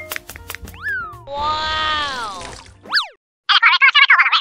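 Cartoon sound effects: a sliding glide that rises and falls, a long squeaky note bending down in pitch, a quick up-and-down glide, then after a short break fast, choppy squeaky chatter like a cartoon character's gibberish near the end.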